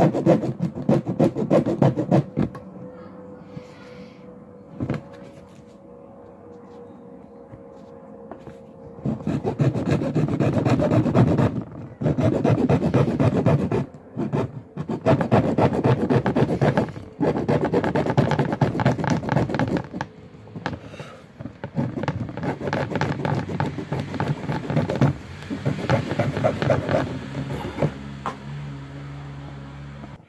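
Small hacksaw blade sawing by hand through a motorcycle's plastic fairing in fast back-and-forth strokes. The sawing comes in spells of a few seconds with short pauses, and there is a quieter lull of several seconds after the first spell.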